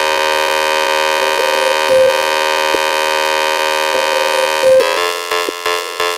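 Breakdown in a hardtek track: the kick drum has dropped out, leaving one sustained, buzzing, horn-like synth chord. Near the end it starts to stutter on and off.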